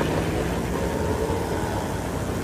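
Steady outdoor street ambience: an even hiss of background noise with no distinct events.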